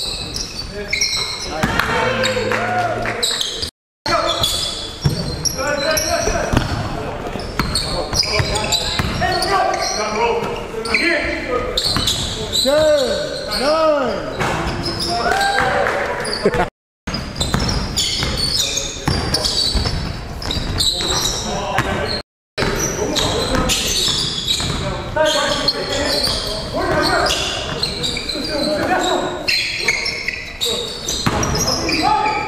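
Game sounds of an indoor basketball game: a ball bouncing on the wooden gym floor, shoes squeaking and players calling out indistinctly, echoing in a large hall. Three brief dropouts to silence break it up.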